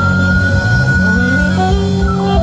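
Live band music: a saxophone holds one long high note over guitar, bass and drums, then drops into a falling run of notes near the end.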